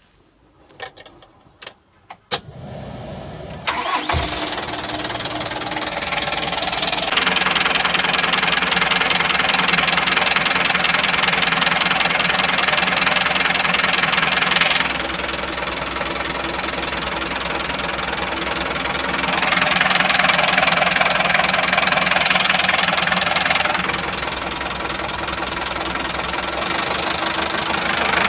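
Hyundai Coaster minibus's diesel engine being started: a few clicks, a short crank, then it catches a few seconds in and settles into a steady idle that grows louder and quieter in turn over stretches of several seconds.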